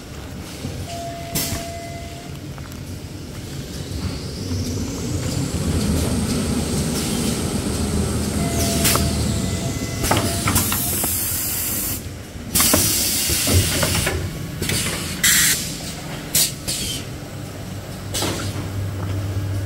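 Toilet paper production-line machinery running with a steady hum and scattered clicks and knocks. Bursts of compressed-air hiss from the pneumatic cylinders venting come in several times from about ten seconds in, and these are the loudest part.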